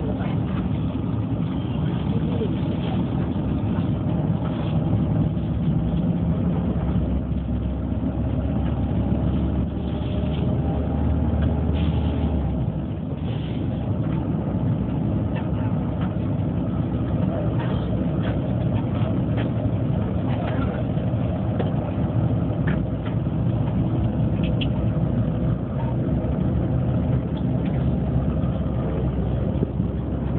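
Steady engine drone and road rumble of a moving sleeper bus, heard from inside the cabin, with scattered small clicks and knocks. The low rumble swells for a few seconds about a third of the way in.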